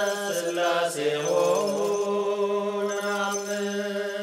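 A chanted hymn: a voice holding long notes over a steady low drone, with a downward glide about a second in.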